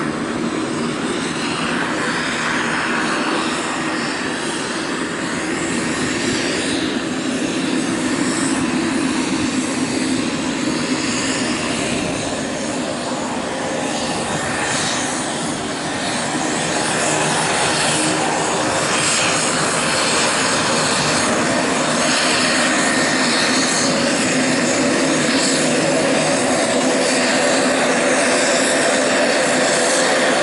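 Pilatus PC-12's single Pratt & Whitney Canada PT6A turboprop taxiing at low power: a steady turbine whine over propeller noise. It grows louder over the second half as the aircraft comes closer.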